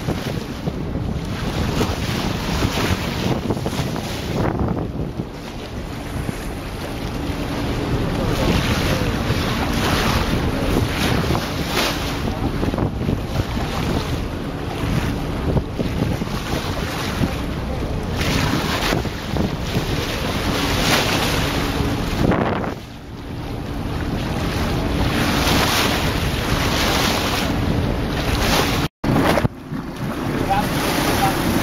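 Wind buffeting the microphone over water rushing past a moving boat, a steady hiss that swells in gusts. A faint steady hum runs underneath, and the sound drops out for an instant near the end.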